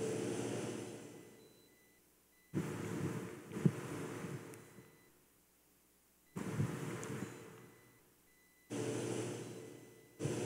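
Muffled rustling and handling noise close to the microphone, in bursts that start suddenly and fade away over a second or two, with a few light clicks. These are the sounds of a chalice being handled and wiped with a cloth after communion.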